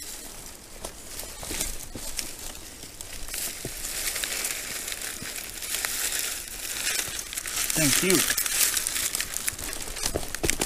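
Bundle of dry thatching reed rustling and crackling as it is carried, handed up and gripped, growing louder from about four seconds in. A short vocal sound comes near the end.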